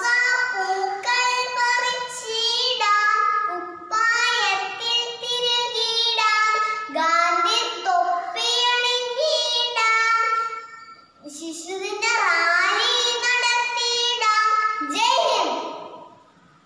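A young girl singing a song solo in a high child's voice, with held and gliding notes, pausing briefly about two-thirds of the way through.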